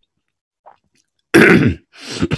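A man clearing his throat once, loudly and briefly, about a second and a half in.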